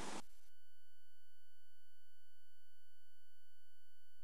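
A steady, high-pitched electronic tone holding one pitch, starting a moment in; no splashing or water sound is heard.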